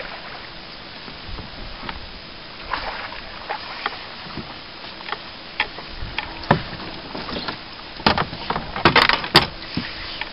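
A hooked fish is brought to the side of a small fishing boat and scooped into a landing net, making scattered splashes and knocks against the boat. A burst of louder knocks and splashing comes near the end as the fish is lifted aboard.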